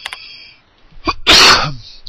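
A man's single loud, explosive cough-like burst of breath, lasting under half a second, about halfway through.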